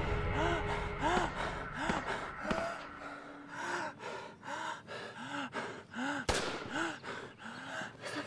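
A person gasping in a run of short, strained voiced breaths, one every half second to a second, the sounds of someone hurt and struggling, over soft background music. A single sharp click about six seconds in.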